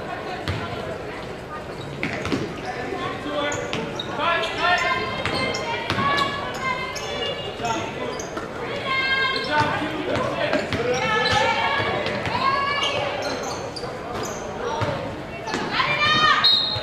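Basketball dribbled on a hardwood gym floor during play, with the thuds of the bounces among voices calling out, in a large echoing gym.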